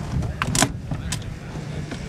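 A few sharp clicks and some mechanical handling noise as the cable-operated propeller feathering knob on a Pipistrel Sinus motorglider's instrument panel is grasped and pulled. The loudest click comes about half a second in, over a low background rumble.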